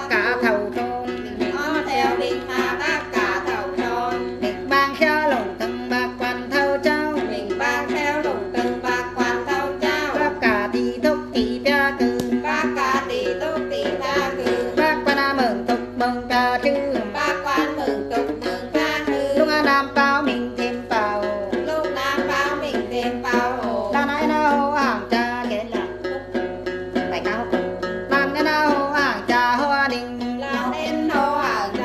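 Đàn tính, a gourd-bodied long-necked lute, plucked in a quick, steady run of notes, with a woman singing a hát then melody over it.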